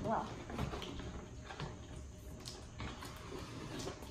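Cardboard shipping box being lifted open and handled on a wooden floor: faint rustling with a few light taps and scrapes. A child's voice is heard briefly at the very start.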